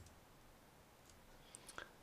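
Near silence: faint room tone with a few soft clicks about a second and a half in.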